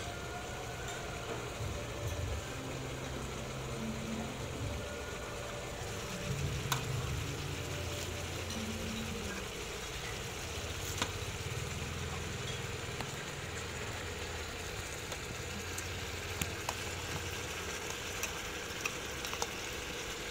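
Food sizzling in a steel wok over a gas burner, with a few sharp metal clinks of the utensils against the wok. A low drone runs underneath.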